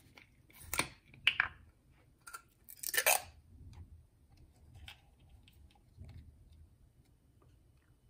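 Plastic test-strip bottle being handled as its cap is opened and a strip is taken out: a few sharp clicks and scrapes in the first three seconds, then fainter small clicks.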